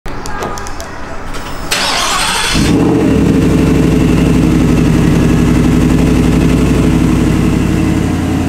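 Start-up of a 2023 Shelby F-150 Off-Road's supercharged V8. About a second of cranking noise comes near two seconds in, then the engine catches and settles into a steady, loud idle.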